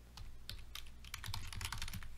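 Typing on a computer keyboard: a few spaced keystrokes, then a fast run of keystrokes in the second half.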